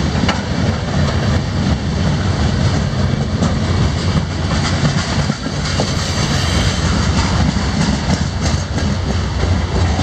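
Freight train boxcars rolling past at close range: steady noise of steel wheels on the rails, with scattered light clicks.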